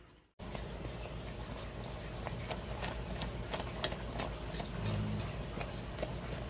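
Sugar syrup boiling hard, close to hard-crack temperature: a steady seething crackle of many small popping bubbles. A flat whisk stirs it through the pan. The sound starts after a brief dropout.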